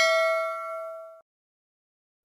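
Bell-like ding sound effect of a subscribe-button animation's notification bell, ringing out and fading, then cut off suddenly a little over a second in.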